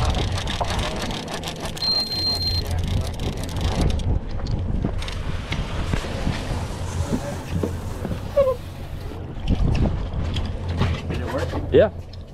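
Boat's outboard engines idling with a low steady hum under wind on the microphone, with scattered knocks and a short high beep about two seconds in.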